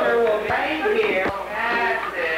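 A man crying out in drawn-out, wavering cries with no clear words, with two short knocks near the middle. The sound fits an anxious, frightened reaction to high-dose amphetamine abuse.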